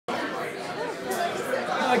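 Indistinct background chatter of several people talking at once.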